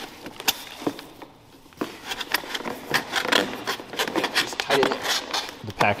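Hands rummaging through crinkle-cut shredded paper packing fill in a cardboard box: irregular rustling and crackling, sparse for a moment about a second in, then busier and denser.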